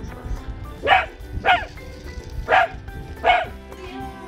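Dachshund puppy barking four times in short, sharp barks over background music.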